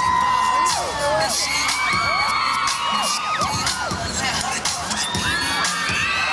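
A crowd of children cheering and screaming, many high voices held and overlapping at once.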